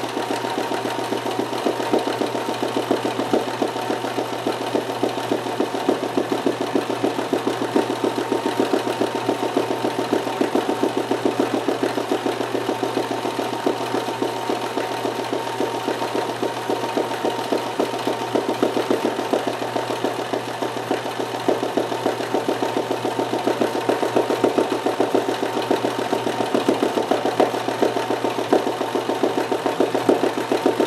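Kenmore 158.1914 sewing machine running steadily at speed with a rapid, even needle stroke, sewing a zigzag satin stitch in free-motion embroidery. It sounds as it should, freshly rethreaded and with a new needle.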